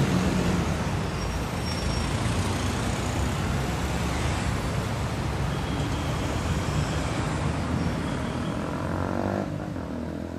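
Steady road traffic on a busy city street: cars, pickups and motorcycles driving past close by, their engines and tyres blending into a continuous rumble.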